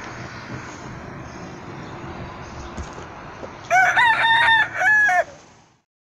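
Steady outdoor background hiss, then about four seconds in a rooster crows: one cock-a-doodle-doo of several notes lasting about a second and a half. The crow is much brighter and clearer than the background, like an added sound effect, and it fades out just before the end.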